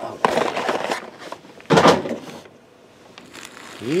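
Foil trading-card packs crinkling as they are handled and set down on a table, with one louder rustle about two seconds in.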